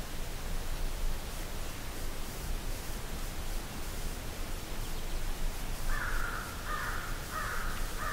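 A bird calling harshly four times in quick succession near the end, each call short and rasping, over a steady low outdoor background hum.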